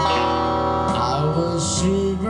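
Electric guitar playing a melodic lead line with sliding notes over a steady sustained accompaniment, in a slow ballad.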